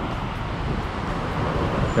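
Street traffic noise: a steady hiss and rumble of passing vehicles, swelling slightly toward the end.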